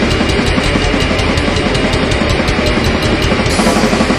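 Black metal recording: distorted guitars over fast, driving drums, with cymbal strokes evenly spaced several times a second.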